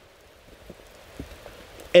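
Faint, steady hiss of light rain falling in a forest, with a few soft taps of drops.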